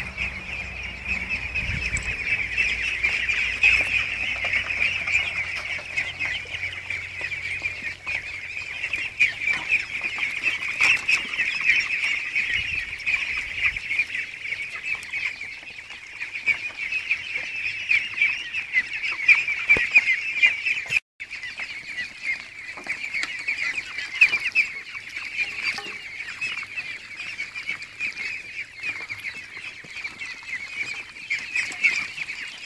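A large flock of young egg-laying ducks calling all at once: a dense, continuous, high-pitched chorus of overlapping calls. The sound cuts out for an instant about two-thirds of the way through.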